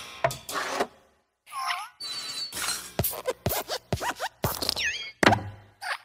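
Cartoon sound effects from a Luxo-lamp-style logo spoof: a run of thuds and thwacks mixed with short gliding boing and squeak tones, the loudest thud near the end.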